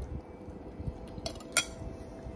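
A metal spoon clinking against a ceramic bowl: two clinks past the middle, the second sharp and ringing.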